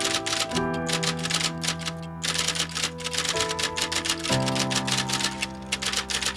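Rapid typewriter key clatter, a fast run of keystrokes with a brief pause about two seconds in. Under it, background music holds sustained chords that change about half a second in and again about four seconds in.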